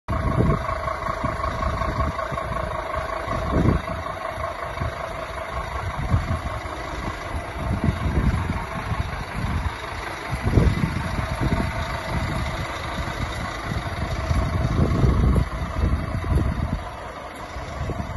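Wind buffeting the microphone in irregular gusts, over a steady background hum with a few held whining tones.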